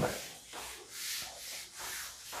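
A handheld duster wiping a chalkboard: soft, hissing rubbing strokes across the board, about two a second.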